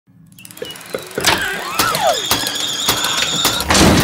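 Animated-advert sound effects fading in and growing louder: a string of sharp clicks and knocks, a couple of falling squeaky glides, and high steady electronic tones. Near the end a whoosh swells up.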